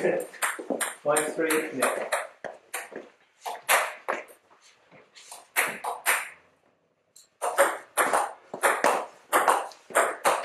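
Voices talking for the first couple of seconds, with a table tennis ball clicking against the table between points. There is a brief hush just before seven seconds in. Then a rally starts: the ball clicks sharply off bats and table several times a second, echoing in the hall.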